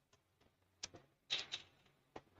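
Computer keyboard typing: a few scattered keystrokes, then a quick flurry of keys about one and a half seconds in.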